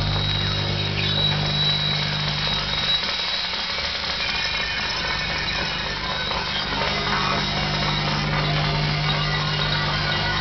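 Electronic noise music played live: a dense crackling, hissing layer over a steady low hum, with a thin high tone on top. The low hum drops out about three seconds in and comes back a second or so later.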